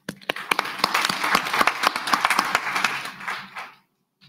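Audience applauding: a dense patter of many hands clapping that starts at once, holds, and dies away near the end.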